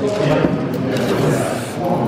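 Indistinct chatter of several voices in a busy, echoing hall, with no single clear speaker.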